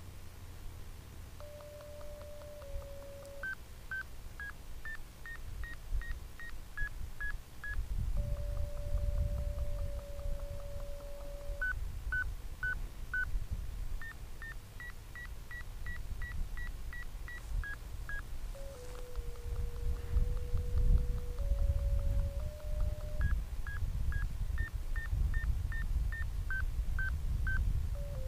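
Variometer tones from an RC glider's telemetry: runs of short beeps, two to three a second, whose pitch steps up and down as the glider climbs, alternating with a held lower tone that shifts pitch in steps as it sinks. Wind rumbles on the microphone underneath.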